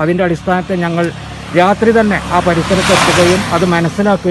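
A man speaking to the camera, with the rushing noise of a vehicle passing on the road behind, swelling and fading, loudest about three seconds in.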